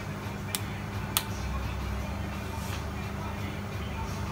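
Steady low hum of a lit gas hob burner under an empty paella pan, with two sharp clicks about half a second and a second in.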